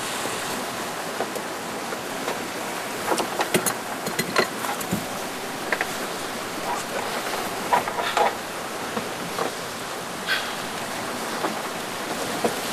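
Wind and rushing sea water around a sailing yacht in rough seas: a steady rush of noise with scattered short knocks and clatter.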